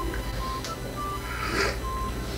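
Background music: a soft melody of short, separate notes over a steady low bass.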